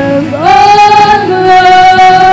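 Female vocalists singing a slow worship song, with band accompaniment. A note rises about half a second in and is held, then steps down slightly a little after a second.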